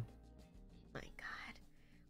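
A short, faint whisper or breathy vocal sound about a second in, otherwise very quiet.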